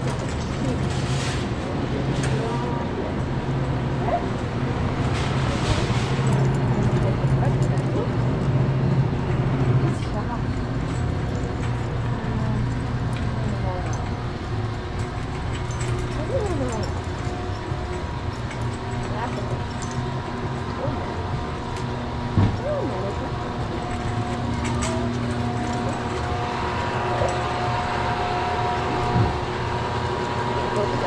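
Loud, steady hum of grocery-store refrigeration units, which the shopper takes to be the source of the noise, with a shopping cart rolling along the aisle. Two brief knocks stand out later on.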